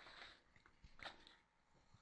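Near silence: room tone with a few faint, short noises, one near the start and one about a second in.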